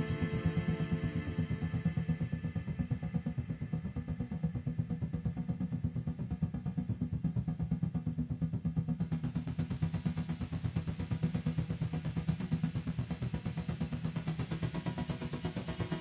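Live electronic music from hardware synthesizers and a eurorack modular synth: a low, steady drone with a fast, even pulse. The higher tones fade away over the first few seconds, and a hissy high layer comes in about halfway through.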